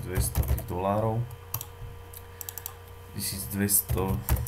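Computer keyboard being typed on: a short run of sharp keystrokes in the middle, with a man's speech before and after.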